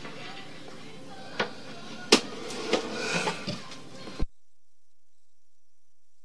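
A few faint, scattered clicks and knocks over low background noise, then the sound cuts off to silence a little over four seconds in.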